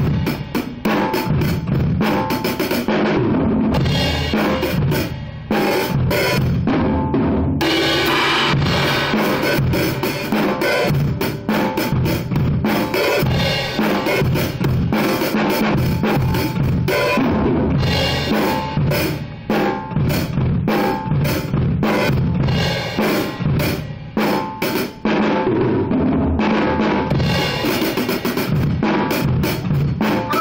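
Acoustic drum kit played continuously: dense snare, tom and bass drum hits with cymbals, with brief breaks about five and a half and seven and a half seconds in.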